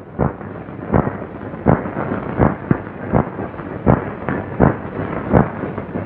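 About eight dull thumps at an even, unhurried beat, a little under a second apart.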